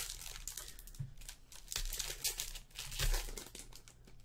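Foil wrapper of a baseball card pack being pulled open and crinkled by hand: irregular crackling, with a couple of soft thuds.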